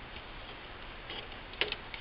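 A few light clicks and taps of a plastic spudger against the laptop's bottom chassis, the loudest about one and a half seconds in, over a steady hiss.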